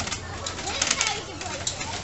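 Wooden glider creaking and squeaking in short bursts as it rocks back and forth under the weight of several people.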